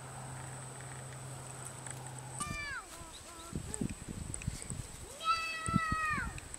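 A cat meowing twice: a short call falling in pitch about two and a half seconds in, and a longer one near the end that falls away. A low steady hum stops just before the first meow, and faint thumps come between the calls.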